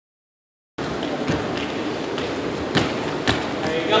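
Running footsteps of players hopping and stepping through hurdles on a hardwood gym floor: a few sharp thuds, irregularly spaced, over the murmur of voices in the room.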